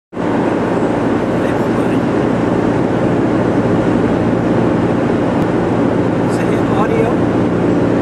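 A steady, loud mechanical drone with a constant low hum, holding an even level throughout, with a few brief voice sounds near the end.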